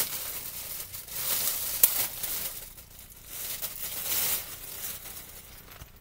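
Plastic packaging crinkling and rustling in bursts as an item is handled and pulled out of its bag, loudest in the first two seconds, with a sharp snap about two seconds in.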